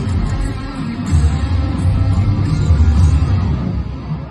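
Rock band playing live in a stadium, recorded from far back in the crowd: electric guitar over heavy, booming bass and drums.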